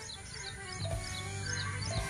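A small bird chirping a run of short, high, falling notes, about three a second, over soft background music with held low notes.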